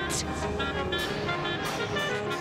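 Live chamber-ensemble music: short, repeated high notes over a low held tone, with a few sharp percussive ticks.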